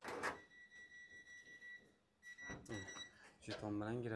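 Door-entry intercom reader beeping as a contactless key fob is held to it: a click, then one steady high beep of about a second and a half and a couple of shorter beeps, the signal that it has accepted the fob and released the door lock.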